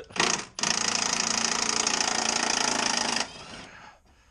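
Milwaukee cordless 3/8-inch impact wrench undoing a bolt: a short burst, then about two and a half seconds of steady rapid hammering, which stops near the end.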